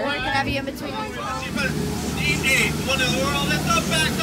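A tour boat's motor sets in with a low, steady hum about one and a half seconds in, under voices talking.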